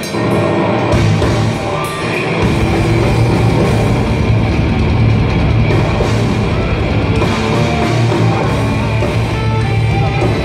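Black metal band playing live, with distorted electric guitars over a drum kit. The deep bass fills in about two seconds in and the music stays loud and dense.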